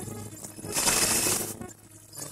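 Abstract electronic glitch noise: a low hum with a harsh burst of hissing, crackling noise a bit under a second long in the middle, which dies away near the end.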